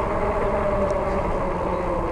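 Fat-tire electric bike on 26 x 4 inch tires riding on pavement at about 24 mph: a steady hum of a few even tones over a low rumble of wind on the microphone.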